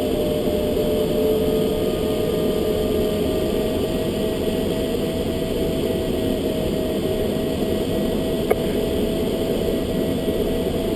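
Steady rush of airflow around a glider's cockpit canopy in flight, with a faint steady tone running through it. A single short click comes about eight and a half seconds in.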